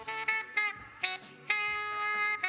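Multitrack playback of a live band recording through the mixing console, with guitar prominent among the instruments. Short notes change every few tenths of a second, then a held note with a bright, rich tone starts about one and a half seconds in.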